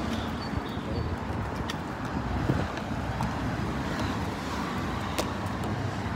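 Steady low rumble of road traffic on a street, with a few faint clicks.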